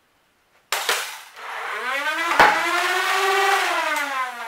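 Nerf Demolisher flywheel motors spinning up with a steadily rising whine, then winding down with a slowly falling pitch. A sharp plastic click about two and a half seconds in is the loudest sound, and another click comes just under a second in, after a moment of silence.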